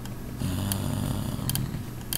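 A man's low closed-mouth hum lasting just over a second, with a few short sharp clicks.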